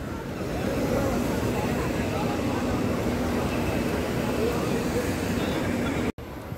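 Ride-on floor-scrubbing machines running on a wet floor: a steady low motor hum over a constant wash of noise.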